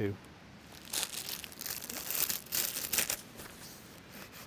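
Clear plastic bag crinkling and rustling as it is handled and tucked into a soft filter-holder pouch. The rustles come in irregular runs from about a second in until about three seconds in.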